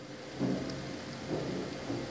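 Steady low background noise from the recording, a hiss with a faint low rumble, in a gap between spoken words. It carries faint soft murmurs, the first about half a second in, and no distinct sound event.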